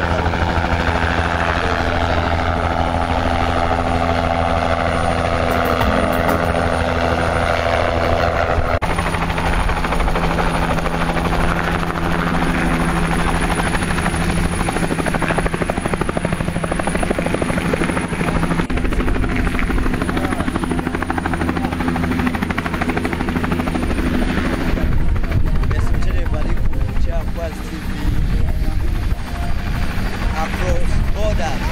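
Light turbine helicopter flying in and landing: a steady rotor beat under a thin, high turbine whine. The whine drops out about three-quarters of the way in, and people's voices come up near the end.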